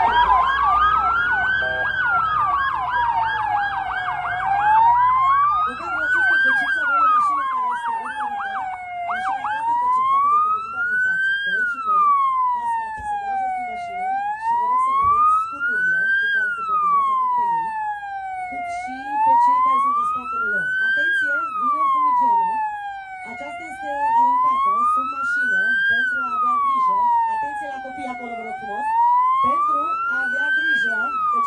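Police vehicle siren on a slow wail, rising and falling about every five seconds. For roughly the first nine seconds a second siren warbles rapidly over it, then stops.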